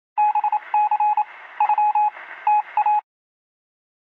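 Electronic beeping at a single mid pitch, in quick irregular groups of short and longer tones over a faint hiss. It stops abruptly about three seconds in.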